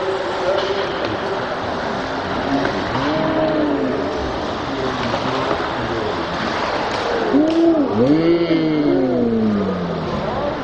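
Ice rink sound played back in slow motion: voices from the rink and stands are dragged into slow, deep, gliding pitches over a steady wash of noise. Several overlapping gliding calls are loudest from about seven and a half seconds in.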